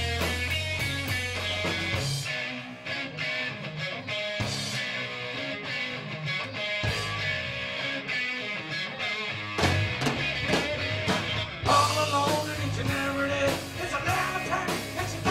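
Live rock band playing an instrumental passage: Telecaster-style electric guitar over drums and bass. The low end thins out about two seconds in, and the band gets louder for the last few seconds.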